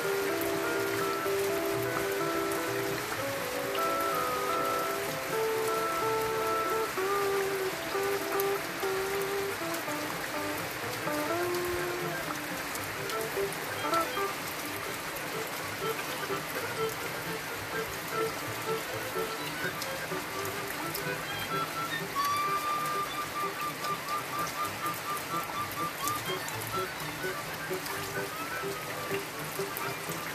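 Steady rain falling, an even hiss throughout, with music of short held notes at changing pitches playing over it, busiest in the first half.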